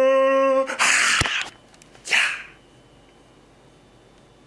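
A man's drawn-out vocal cry, held on one steady pitch, cuts off under a second in. It is followed by a loud breathy exhale and then a shorter hiss of breath about two seconds in, after which there is only faint room tone.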